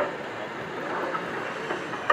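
Gauge 1 model train rolling along its track, with a click at the start, over the steady background hubbub of an exhibition hall.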